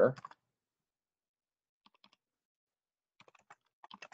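Faint typing on a computer keyboard: a few scattered keystrokes about two seconds in, then a quicker run of taps near the end.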